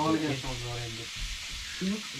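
Steady sizzle of food frying in a pan.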